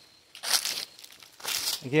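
Footsteps crunching through dry fallen leaves, two steps about a second apart.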